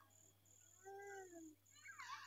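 Near silence: faint room tone, with one faint, short call that rises and falls in pitch about a second in.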